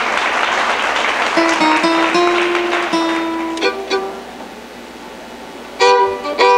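Acoustic guitar accompaniment strumming and then ringing a few held notes while the fiddle rests between contest tunes. Near the end the fiddle comes back in, loud, with the next tune.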